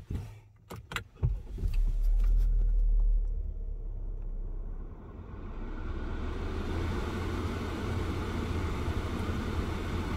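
A few clicks, then a 2020 Chevrolet Equinox's turbocharged four-cylinder engine starts. It runs louder for about two seconds, then settles to a steady idle.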